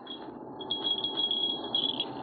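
Crickets trilling in one steady high tone, with a short pause near the end, over a low even rushing noise of night ambience.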